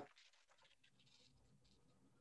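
Near silence, with faint scratching of a pen on paper and the light rustle of paper being handled.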